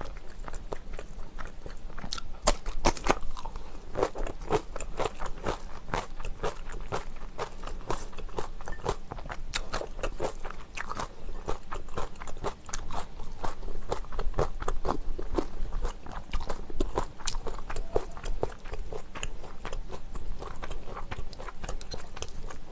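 Close-miked chewing of crunchy kimchi: a long run of crisp crunches and wet mouth sounds.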